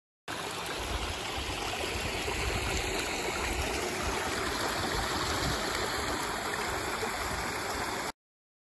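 Small rocky brook flowing and trickling over stones: a steady rush of water that cuts in abruptly a moment in.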